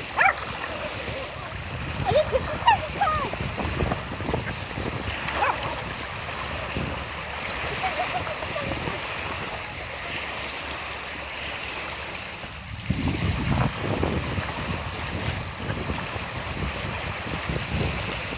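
Small waves lapping steadily on a pebble lakeshore, with a small dog giving a few brief high cries in the first seconds. A gust of wind buffets the microphone a little after the middle.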